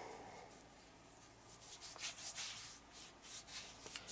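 A hand rubbing shea butter body cream into the bare skin of a forearm: faint, quick, soft strokes of palm and fingers over the skin, starting about a second and a half in.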